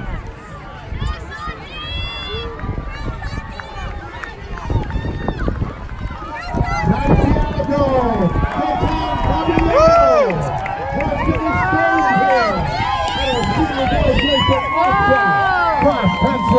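Crowd of spectators shouting and cheering, many voices at once, swelling about six seconds in and staying loud as a runner comes toward the finish.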